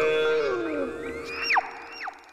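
Comic background-music sound effect: a held synthesized chord slides down in pitch, then whistle-like tones rise slowly and drop off sharply, twice.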